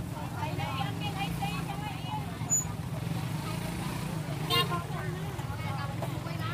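Busy market ambience: background chatter over a steady low engine hum, with a short louder pitched call or horn about four and a half seconds in.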